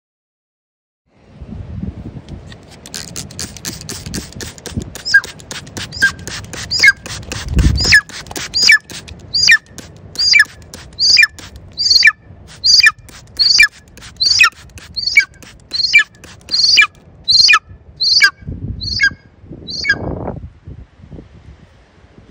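A bird of prey calls over and over in short, sharp, high notes, about one and a half a second, for some fifteen seconds. The calls grow loud through the middle and trail off near the end. Rustling and handling noise comes before them, with a low thump about eight seconds in.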